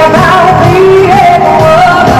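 A woman singing pop lead vocals into a microphone, holding long notes that slide between pitches, over a loud live band.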